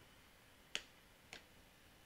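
Two sharp clicks about half a second apart, the first louder, over near silence: computer mouse button clicks.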